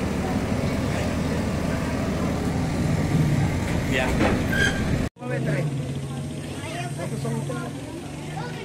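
A motor vehicle's engine runs steadily under a few short spoken words. The sound cuts off abruptly about five seconds in, and quieter voices follow over a low hum.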